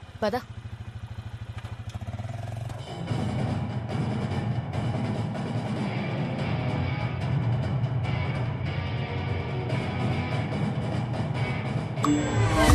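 A two-wheeler engine running with an even low pulsing for the first few seconds. From about three seconds in, louder background film music takes over and carries on to the end.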